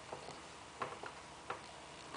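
Marker pen tapping and scratching on a whiteboard while writing: a few short ticks.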